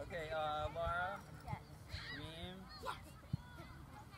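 Distant shouting voices on a soccer field: drawn-out calls with no clear words, and a shorter rising call about two seconds in. One sharp knock comes about three seconds in.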